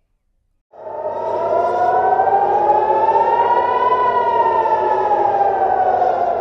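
Air-raid siren wailing, the warning of an air attack: after a brief silence it starts about a second in, rises slowly in pitch to a peak about four seconds in, then falls, over a low rumble.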